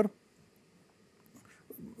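A pause in a man's speech: the end of a word, then near silence, then faint breath and mouth sounds on a lapel microphone just before he speaks again.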